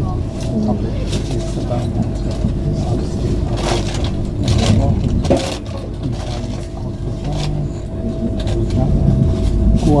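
Eurostar high-speed train rolling, heard inside the carriage: a steady low rumble with a faint steady whine at times and occasional sharp clicks, under indistinct passenger chatter.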